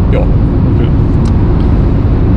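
Steady low rumble of road and engine noise inside a Renault Clio's cabin while it drives at speed.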